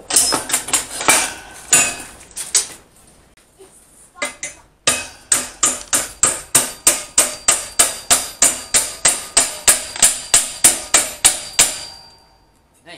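Hammer blows on steel with a metallic ring, bending over a notched steel tab at the end of a square-tube frame. A quick irregular burst of blows, a short pause, then steady blows about three a second.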